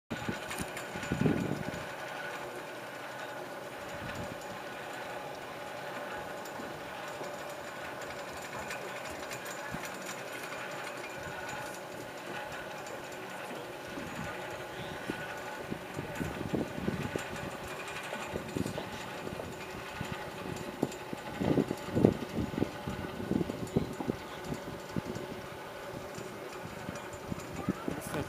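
Steady mechanical hum with several held tones from aerial tramway terminal machinery, with a few louder low bursts in the second half.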